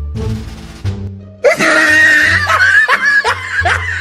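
Background music with plucked low notes, then about a second and a half in a sudden loud burst of laughter, a run of repeated ha-ha strokes, over the music.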